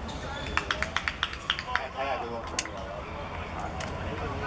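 Indistinct voices of players calling out across an outdoor football pitch, with a scatter of short sharp clicks in the first half.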